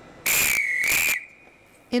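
Railway guard's whistle blown once, a shrill, slightly warbling blast lasting about a second: the guard's signal that the train is ready to depart.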